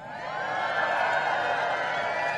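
A large crowd cheering and shouting, many voices at once, swelling over the first second and holding.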